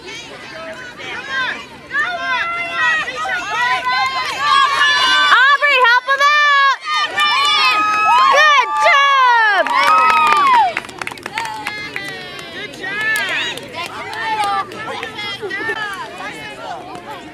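Several high-pitched voices shouting and squealing at once, loudest from about two seconds in until about eleven seconds, then dropping back to lighter chatter.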